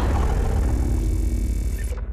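Logo intro sound effect: a loud, dense rumble with deep bass that tails off near the end.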